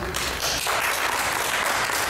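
Audience applause: a dense, even spell of clapping that fills the pause in the talk.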